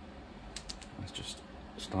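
A few faint, scattered clicks and taps from a plastic paint dropper bottle being handled.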